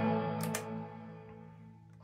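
An electric guitar chord through a Boss Katana 100 amp, with boost and reverb on, ringing out and fading away. A single click about half a second in, as a GA-FC footswitch is pressed.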